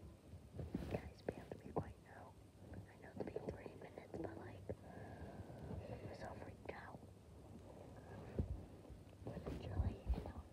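A person whispering quietly, mixed with scattered faint clicks and knocks.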